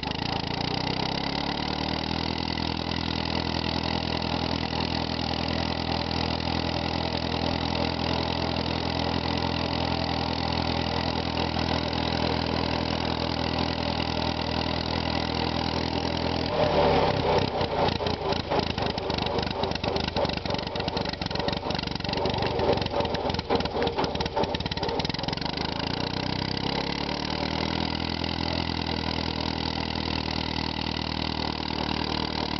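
Massey-Harris Pony tractor's small four-cylinder engine running steadily on the move. About 16 seconds in it turns louder and uneven, with irregular pulses for several seconds, then settles back to a steady run.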